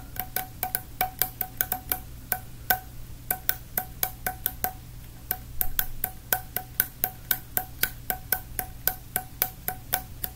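Fingers tapping quickly on a hollow blue plastic tube: rapid sharp clicks, about five a second, each with a short hollow ringing tone, with a brief pause about five seconds in.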